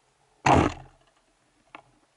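Band-powered speargun fired underwater: one loud sharp crack about half a second in, dying away quickly, followed by a faint click near the end.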